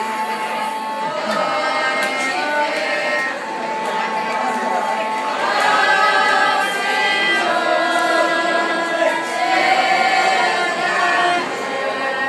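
A mixed choir of teenage girls and boys singing together, holding long notes. The singing grows a little louder about halfway through.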